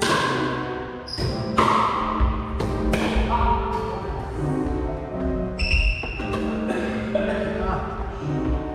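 Pickleball paddles striking the plastic ball in a rally: a series of sharp, irregularly spaced hits, some with a brief high ring, over background music.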